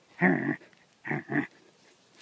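Small Pomeranian–Keeshond mix dog vocalising in play as it goes for a toy: one short sound just after the start, then two quicker ones about a second in.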